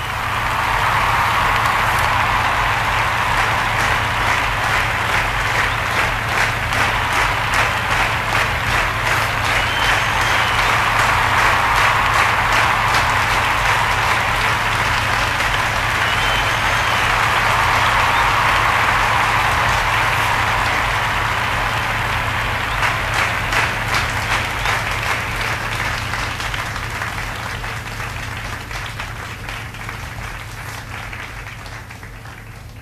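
Applause from many people clapping, starting abruptly, holding steady and slowly fading away toward the end, over a steady low hum.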